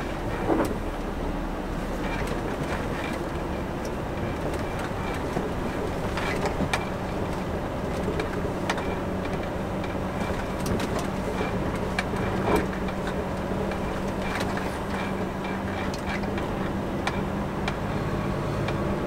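Volvo FH lorry's diesel engine running steadily at low speed, heard from inside the cab, with scattered knocks and rattles as the heavily loaded truck bumps along a rough lane.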